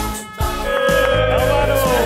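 Background music with a steady bass and a held melodic line; it drops out for a moment just after the start, then comes back.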